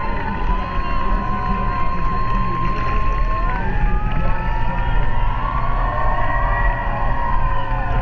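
Sea water sloshing against a camera held at the surface, a steady low rumble, with voices calling out in the background, some of them long and drawn out.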